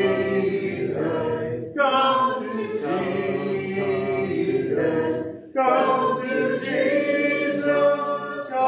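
Congregation singing a hymn a cappella, unaccompanied voices holding long notes in phrases. There is a short breath between phrases about two seconds in and another about five and a half seconds in.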